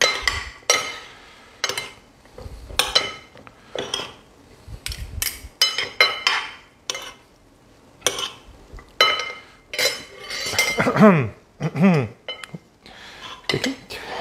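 Two metal serving spoons clinking and scraping against a bowl as a farfalle pasta salad is tossed, in irregular clusters of short clinks.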